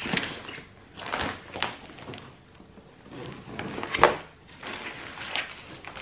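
A box being opened and unpacked from a large paper mailer: rustling paper and scattered knocks and scrapes of the box and its contents, the sharpest knock about four seconds in.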